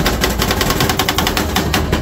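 Two metal spatulas rapidly chopping on a steel rolled-ice-cream cold plate, tapping out a fast, even rhythm of metallic clicks as the mango and almonds are chopped into the freezing cream.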